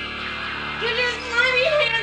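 A woman's wavering, wordless cry starting about a second in, over a steady, held background music score.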